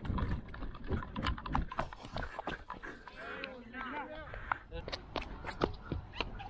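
Footsteps of a batsman on grass and an artificial pitch, close and thudding through a helmet-mounted camera, in an irregular run of knocks, with faint voices of other players in the distance.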